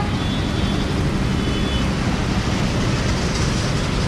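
Steady low rumble of outdoor street and traffic noise, with a few faint high chirps in the first couple of seconds.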